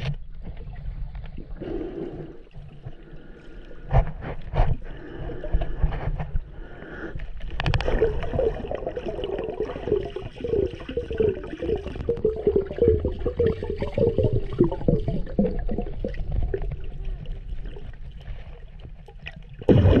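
Water gurgling and sloshing, with scattered sharp knocks, several near the start and a quick run of clicks a few seconds in. The gurgling grows busier and louder for several seconds through the middle.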